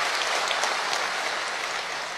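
Audience applauding, the clapping dying down near the end.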